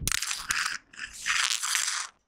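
Rustling, crunching handling noise on a clip-on lapel microphone, in two bursts with a short gap near the middle, ending abruptly.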